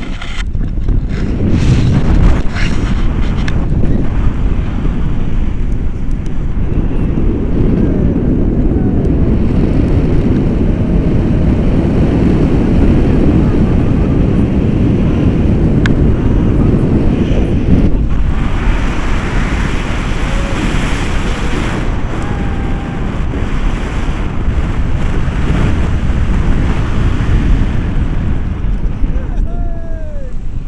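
Wind from a paraglider's flight buffeting an action camera's microphone, a loud steady rumble. It turns brighter and hissier for a few seconds past the middle.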